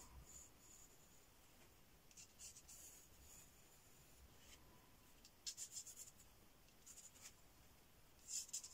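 Faint scratching of a wooden pencil drawing short lines on paper, in a few brief clusters of strokes: about two seconds in, around five and a half seconds, and near seven seconds.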